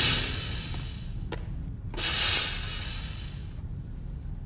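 Starship sliding door hissing, with a sharp click about a second in and a second hiss about two seconds in, over a low steady ship hum.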